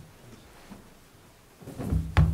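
Quiet room tone, then low rumbling thumps building up near the end.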